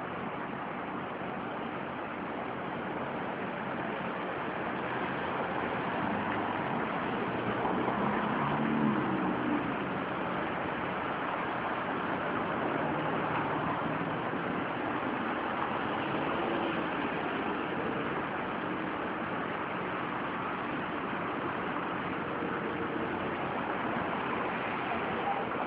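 Steady outdoor urban background noise: a low idling-engine hum under an even hiss. Faint distant voices come through about eight to ten seconds in.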